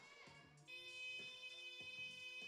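A faint, steady electronic tone with many overtones starts about two-thirds of a second in and holds without changing pitch.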